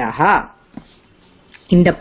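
Speech only: a voice speaking Sanskrit, breaking off for about a second in the middle before going on.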